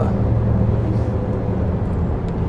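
Steady low drone of a MAN TGX XXL truck's diesel engine and tyre noise, heard inside the cab while cruising on the open road pulling a loaded trailer.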